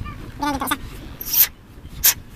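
Thread-seal (PTFE) tape being pulled and stretched off its roll while wrapping a pipe fitting: a short hiss that builds and cuts off sharply about halfway through, and another brief one at the end. A short pitched whine-like sound comes just before the first hiss.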